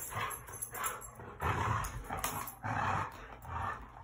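Dogs growling in a playful tug-of-war over a ring toy, in about three short bursts.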